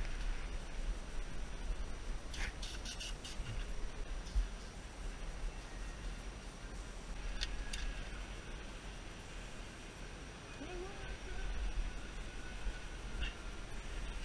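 Cloth rag rubbing and wiping over the suspension parts inside a car's front wheel arch, over a steady low rumble, with a few light clicks about two and a half seconds in and another near the middle, and a brief squeak near eleven seconds.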